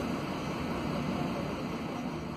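Steady low drone of a Mercedes-Benz OC500LE city bus with an OM936LA six-cylinder diesel engine, heard from inside the passenger cabin.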